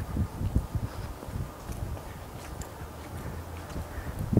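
Sneakered footsteps on concrete roof pavers as a boxer shadowboxes, stepping in time with his punches: soft, irregular thuds over a low rumble.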